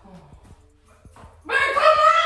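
A quiet pause with a few soft knocks, then, about one and a half seconds in, a person's voice breaks into a loud, high-pitched, drawn-out cry.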